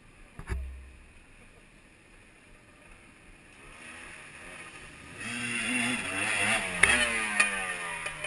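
Off-road trail motorcycle riding through a deep ford toward the listener. Its engine revs up and down and grows loud from about halfway, with water splashing around it and a couple of sharp knocks near the end. A single thump about half a second in.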